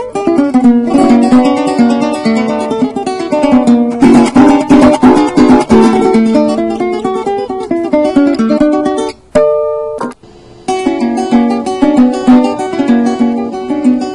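Venezuelan cuatro played solo: a busy run of picked and strummed notes that ends about nine seconds in with a single short chord and a brief silence. A new piece, a danza zuliana, then starts with evenly repeated strummed chords.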